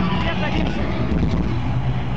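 A metal band playing live at full volume in an arena, recorded from inside the crowd through an overloaded camera microphone as a dense, distorted wash of sound, with shouting voices over it.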